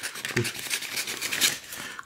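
Scissors cutting a sheet of printed paper, a run of quick, irregular snips.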